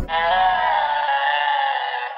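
The beat and bass cut out at once, leaving a single sustained electronic tone, rich in overtones, that drifts slowly down in pitch as the track ends.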